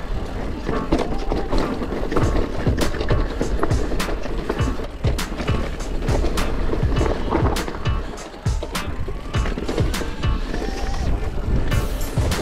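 Mountain bike riding over rocky singletrack: tyres rumbling on stone and dirt, with frequent sharp knocks and rattles from the bike over the rocks. Music plays underneath.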